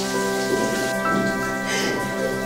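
Background music of slow, held chords, with a steady rain sound under it; new notes come in near the start and again about a second in.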